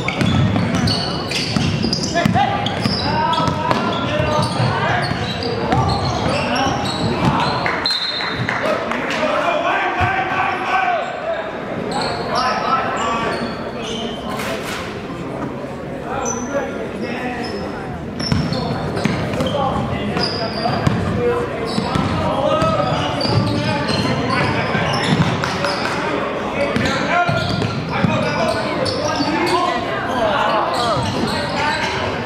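Live high-school basketball game in a reverberant gym: crowd and players' voices chatter throughout, with a basketball bouncing on the hardwood floor and short high sneaker squeaks scattered across the play.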